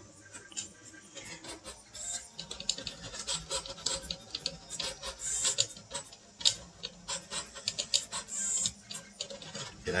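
3DLS all-lead-screw 3D printer running a fast print at 150 mm/s: its stepper motors drive the lead screws through quick direction changes, giving an irregular run of ticks and rattles over a low hum. The machine shakes the workbench it stands on.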